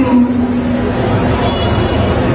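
A male Quran reciter's long held, chanted note ends just after the start. It is followed by a loud, rough rumble of hall noise with indistinct voices.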